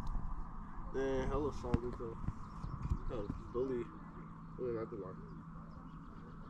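Brief snatches of faint speech from people talking, over a steady low rumble.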